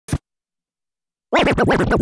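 DJ scratching a record on a turntable, the sound cut in and out with the mixer's crossfader: one short stab right at the start, then a quick run of scratches from a little over a second in.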